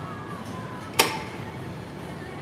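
A single sharp metallic clank about a second in, with a brief ringing tail, from a gym strength machine as a person sits down onto it.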